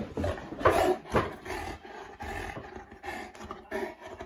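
A Boerboel growling, loudest in surges about a second in.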